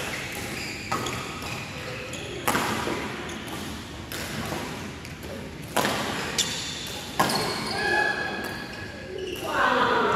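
Badminton rackets striking a shuttlecock during a doubles rally: several sharp, short cracks at uneven intervals, each ringing briefly in a large hall. Players' voices call out near the end.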